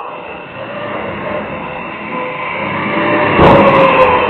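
A vehicle approaching, its rumbling noise growing louder, then turning much louder and harsher shortly before the end.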